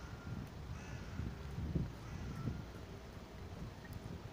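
Outdoor street sound: a low, steady traffic rumble with irregular soft footsteps, and a few short bird calls, crow-like, scattered through it.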